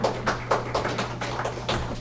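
A small audience clapping, a quick irregular patter of hand claps, over a steady low electrical hum from the room's sound system.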